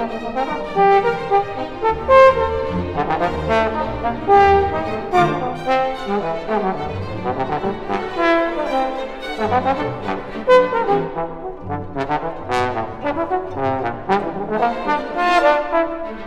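Trombone playing a solo line of many quick notes, with a string orchestra accompanying.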